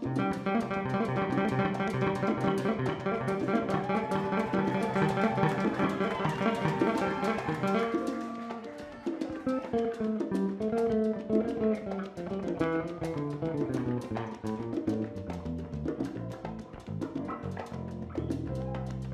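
A live salsa band playing, with the electric bass prominent over drums and percussion. The full band thins out about eight seconds in, leaving a moving bass line over percussion.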